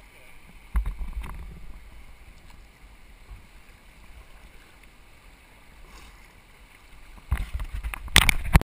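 Kayak paddle strokes on calm, flat river water: soft splashes and water moving around the hull. There are low bumps about a second in and again near the end.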